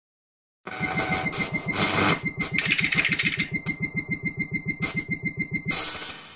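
An engine-like sound effect that starts about half a second in and runs with a fast, even pulse of roughly nine beats a second under a steady high tone, ending with a short loud burst.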